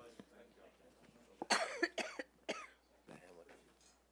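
Low, indistinct voices in a meeting chamber, with a burst of coughing about a second and a half in.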